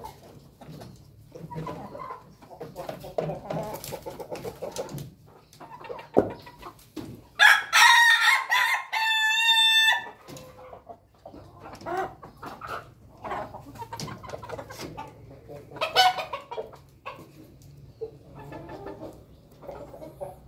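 A rooster crows once, loudly, a little past a third of the way in, the crow ending in a quick run of short repeated notes. Softer clucking from the chickens around it runs throughout, with one more short loud call later on.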